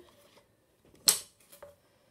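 One sharp, brief click about a second in, from small craft tools being handled on a wooden table, followed by a few faint handling noises.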